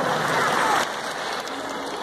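Audience applauding, a steady clatter of clapping that drops in level a little under a second in.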